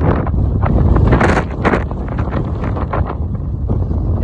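Wind buffeting the phone's microphone: a loud, low rumble with irregular gusty flares.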